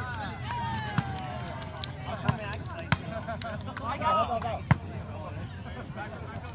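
A volleyball being struck by players' hands and forearms during an outdoor rally: several sharp smacks, the loudest near the end, amid shouts and chatter from players and onlookers.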